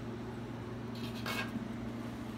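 Coiled plastic guitar binding strips being handled, with a brief light rustle about a second in, over a steady low hum.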